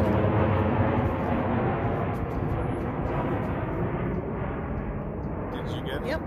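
Airplane flying overhead: a steady engine rumble that slowly fades as it passes.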